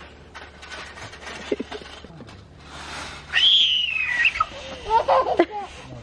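A toddler's long, high-pitched squeal that falls in pitch, about halfway through, followed by a few short babbling sounds near the end.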